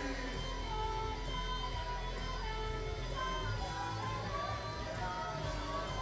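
Karaoke music: a backing track with guitar playing through a PA system, with a man singing held, sliding notes into a microphone over it.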